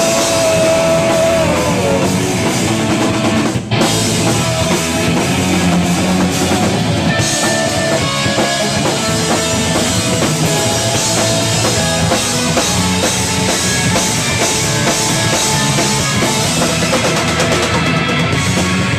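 Rock band playing live and loud: electric guitar, bass guitar and a drum kit, with one momentary dip in the sound about four seconds in.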